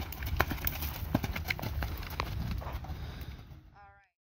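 Hoofbeats of a Hanoverian gelding moving on sand-and-gravel arena footing: irregular knocks and clicks over a low rumble, fading out near the end.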